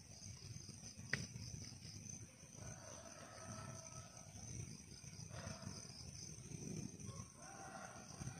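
Faint night-time outdoor ambience: a steady high chirring of insects, with a few faint, low, drawn-out sounds and a single click about a second in.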